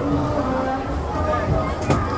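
People talking in the background with music playing, and one brief knock just before the end.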